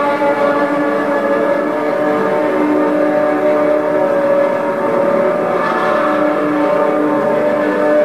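Live ambient drone music: a dense, steady wash of overlapping held tones with no beat, swelling slightly brighter about six seconds in.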